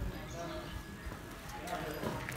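Faint, low voices in the background, with a light click at the very start.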